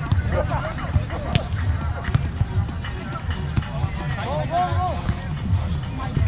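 Beach volleyball rally: voices and background music, with a few sharp knocks of the ball being played, the clearest about a second and a half in.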